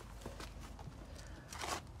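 Faint crunching and rustling as a freshly dug-up avocado tree, its bare roots still holding some soil, is handled and carried, with a brief louder rustle near the end.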